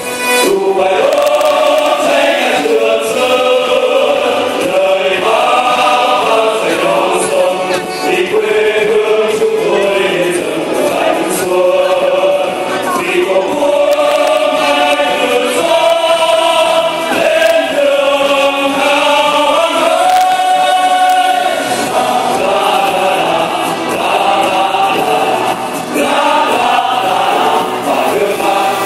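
A men's choir singing a song in unison, in long held and gliding notes, with musical accompaniment.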